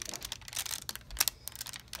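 Ironing paper crinkling and rustling in quick crackles as it is peeled back off freshly ironed Perler beads.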